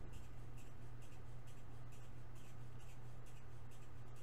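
Steady low background hum, with faint, irregular scratchy rustling scattered over it.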